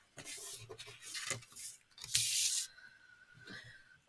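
Paper and card rustling and sliding against a wooden tabletop as they are handled, in three short bursts, the loudest about two seconds in.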